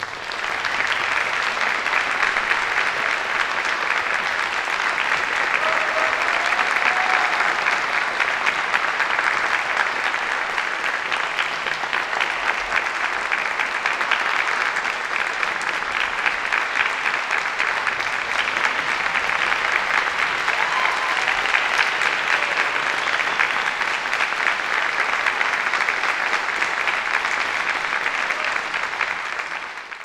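Audience applauding steadily, fading out at the very end.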